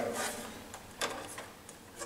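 A few light clicks and knocks from the smoke detector's removed plastic front cover being handled and left hanging on its tethers, the clearest about a second in.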